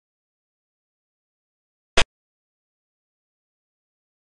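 A single sharp click about two seconds in: the piece-placement sound effect of a digital xiangqi board as a move is played.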